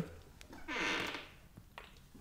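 A quiet, short breath from a man's voice, under a second long, with a few faint clicks around it.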